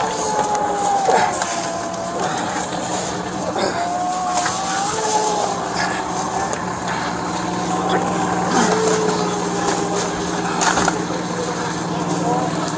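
A person trapped under a car cries out in long, wavering wails, several in a row with short breaks. From about halfway through, a steady engine hum runs beneath them.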